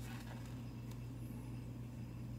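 A steady low room hum, with faint rustling of a paper booklet being handled near the start.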